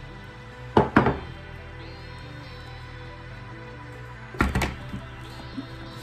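Background music, with two sets of sharp knocks, a pair about a second in and a cluster a little past four seconds, from a glass dish being handled and set down on the table.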